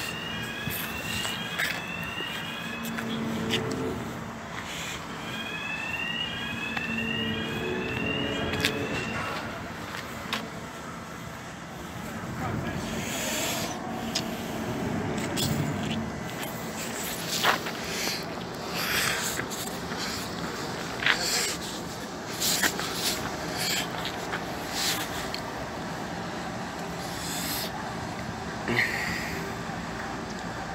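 Swing-bridge warning alarm sounding a rising electronic tone over and over, about twice a second, for the first several seconds, with a low steady hum under it. It then gives way to steady outdoor noise with scattered sharp clicks and knocks while the hydraulically driven deck swings open.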